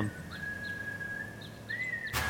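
A single high steady tone, like a held whistle or sine note, with a brief upward bend near the end: a sustained tone in the documentary's soundtrack.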